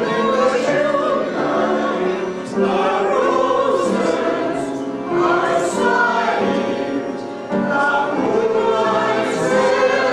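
A choir singing: several voices together holding and changing sung notes.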